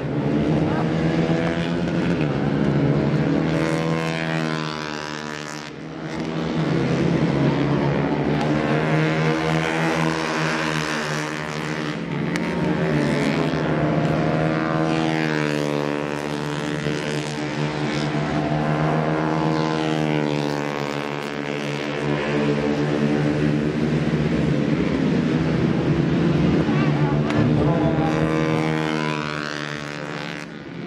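Racing sport motorcycles running at high revs, their engine pitch repeatedly rising and falling through the gears as the bikes go past. The sound fades briefly twice, about six seconds in and near the end.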